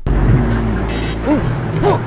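Background music with a car-engine sound effect that starts abruptly, a steady low noise under a held tone and a few short sliding notes.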